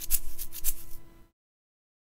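A plastic bottle of Grill Mates seasoning shaken like a shaker, the grains rattling in quick even strokes about four or five times a second, then cutting off abruptly to silence just over a second in.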